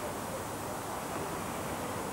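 Steady, even background hiss of a tennis court broadcast between points, with no ball strikes or cheering.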